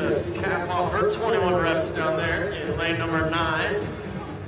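A voice over background music.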